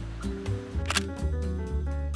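Background music, with a single camera shutter click a little before the middle.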